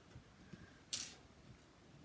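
A plastic squeegee scraping chalk paste across a silkscreen transfer: one short, sharp scrape about a second in, with a few faint handling ticks around it.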